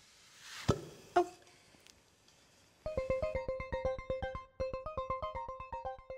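Two plastic tumblers held together by low air pressure inside being pulled apart: a brief rising rustle, then a sharp pop as the vacuum breaks, and a second click about half a second later. Music of quick plucked or keyboard-like notes starts about three seconds in.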